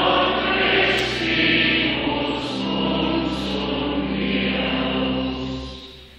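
Church choir singing a sustained phrase of sacred music, many voices together, fading away near the end.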